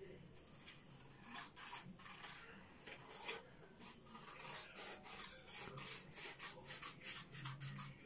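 Scissors cutting through a folded sheet of printer paper: a run of short, faint snips that come quicker in the second half.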